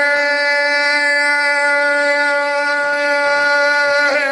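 A man's voice holding one long, steady sung note in a chanted recitation of elegiac poetry (a zakir's majlis recitation), unwavering in pitch for several seconds before breaking back into wavering melody at the very end.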